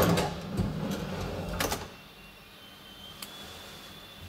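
Automatic elevator car doors opening at a landing, starting suddenly and running for a little under two seconds before stopping with a clunk. A quieter mechanical hum follows.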